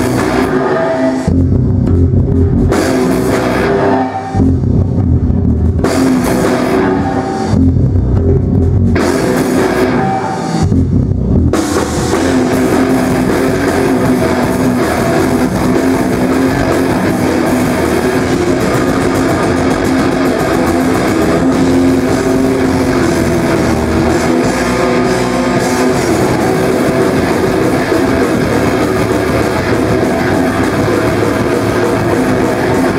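Metal band playing live, with distorted electric guitar and drum kit at a loud level. For the first eleven seconds or so it switches about every three seconds between heavy, low passages and full-range playing, then plays on without a break.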